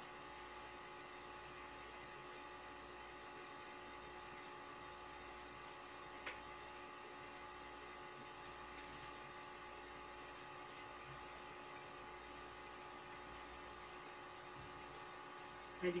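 Faint, steady electrical hum made of several held tones, with a single soft click about six seconds in.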